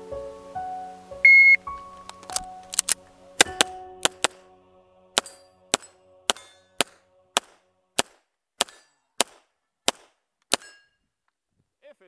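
A shot timer's start beep, one short steady tone about a second in, then a string of about eighteen pistol shots. The first shots come in quick pairs and clusters; the later ones fall evenly, about half a second apart, and the last comes near the end. Soft instrumental music plays under the first few seconds and fades out.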